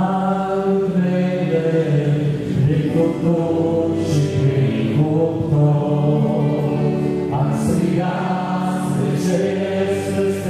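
Two men singing a slow hymn together into microphones, with long held notes.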